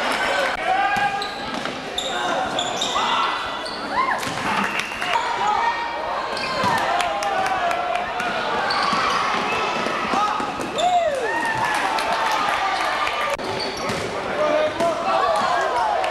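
Live basketball game in an echoing gym: a ball bouncing on the hardwood floor, short sneaker squeaks on the court, and spectators' voices and calls throughout.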